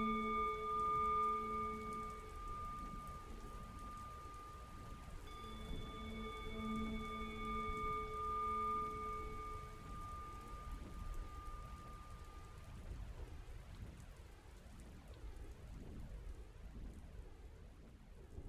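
A Tibetan singing bowl rings over steady rain: a tone still dying away at the start, then a fresh strike about five seconds in that rings with several clear overtones and fades out over the next several seconds. The rain sound goes on alone afterwards, growing fainter toward the end.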